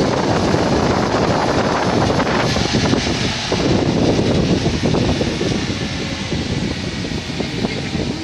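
Wind rushing past a moving car and buffeting the microphone, mixed with steady road noise from the tyres and engine. It eases a little in the second half.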